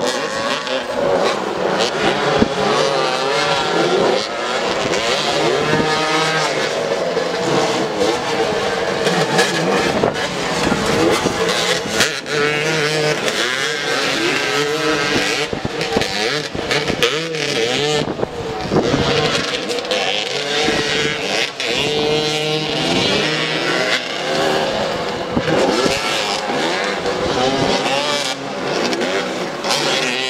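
Several motoball motorcycles' engines running and revving together, their overlapping pitches rising and falling constantly as the riders jockey for the ball.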